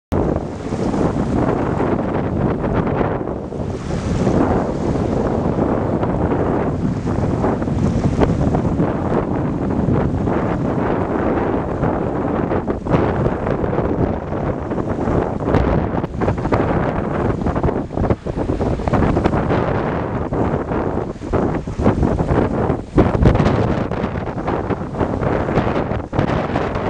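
Strong wind blowing across a camcorder's microphone: a loud, continuous rush of noise, heaviest in the low end, that swells and dips unevenly with the gusts.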